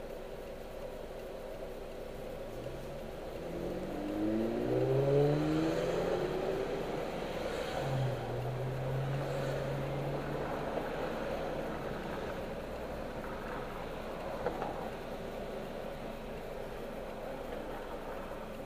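A car engine accelerating, its pitch rising for a few seconds and then holding steady, heard from inside a car's cabin over a constant low road and engine hum.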